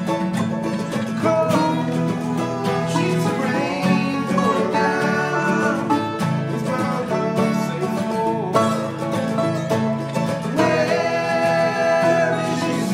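Acoustic bluegrass band playing: banjo picking over strummed acoustic guitars and mandolin, at a steady level.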